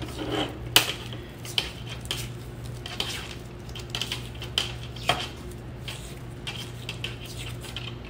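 Cloth automotive harness tape being wrapped by hand around a wire bundle: scattered small clicks and rustles as the tape peels off the roll and is pulled around, over a steady low hum.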